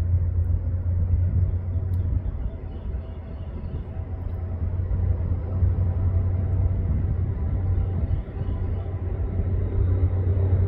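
Steady low rumble of nearby road traffic, with a faint hum above it.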